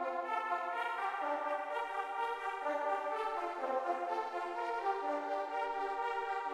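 Sustained, horn-like chords played on a MIDI keyboard through a software instrument. The notes overlap and the chord shifts about every half second to a second, all in the middle register with no bass line.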